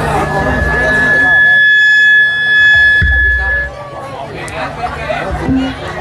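A long, steady high-pitched tone held for about three and a half seconds over crowd chatter, loudest in its middle, with a low thud about three seconds in.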